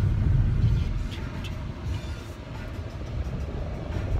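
Road and engine noise inside a moving car's cabin: a steady low rumble that eases off about a second in.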